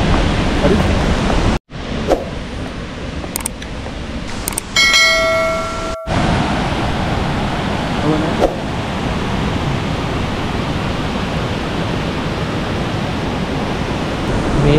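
Steady rushing roar of a large waterfall, Dunhinda Falls. A short bell-like chime of several ringing pitches sounds about five seconds in.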